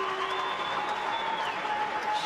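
Arena crowd applauding an ippon throw in a steady wash of clapping, with faint held tones underneath.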